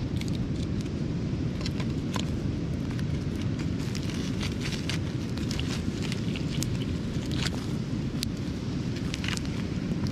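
Coals of a beach wood fire crackling with scattered sharp pops around a whole mud crab cooking in them, over a steady low rumble of wind on the microphone.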